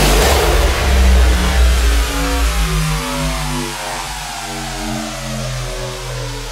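Hardstyle mix at a track transition: the heavy kick-and-bass thins out while a distorted electronic sound falls steadily in pitch in short stepped notes, a wind-down effect between tracks.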